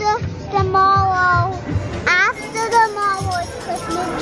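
A high voice sliding up and down between notes over music with a repeating bass beat.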